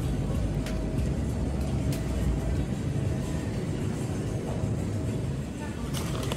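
Store ambience: a steady low rumble with faint background music and a few light clicks of packaging being handled.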